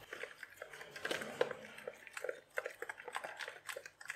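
Metal spoon stirring a thin, oily spice marinade in a plastic mixing bowl, with quick, irregular scrapes and clicks against the bowl and wet squishing.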